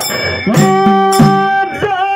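Live dollina pada folk music: a dhol drum struck about three times a second under a steady, held melodic note.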